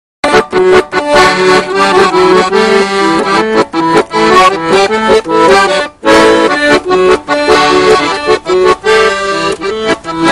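Accordion playing a Russian folk tune in quick, rhythmic notes and chords, with a brief pause about six seconds in.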